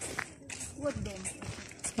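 Faint footsteps walking on a dirt road, under a brief quiet spoken word.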